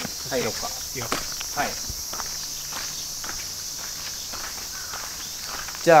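Footsteps walking on a dirt and gravel yard, over a steady high chorus of insects.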